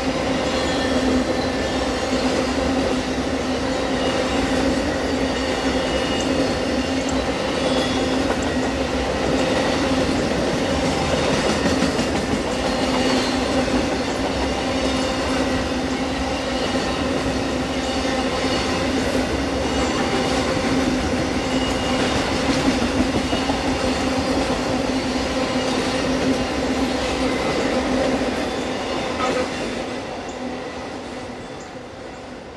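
A long string of Amtrak auto carrier cars rolling past: a steady rumble of steel wheels on rail with a constant ringing hum and some clickety-clack over the joints. It fades near the end as the last car goes by.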